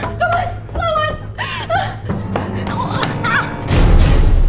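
A woman's frightened whimpers and gasps over a steady low music drone, followed by a loud thud near the end.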